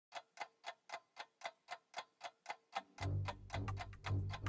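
A steady ticking, about four ticks a second, like a clock. About three seconds in, a low drone of trailer music comes in beneath the ticks.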